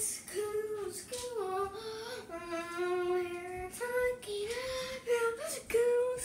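A young child singing a wordless tune in a high voice, a string of held notes with one long, lower note in the middle.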